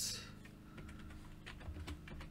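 Faint, irregular keystrokes on a computer keyboard, a few scattered key presses.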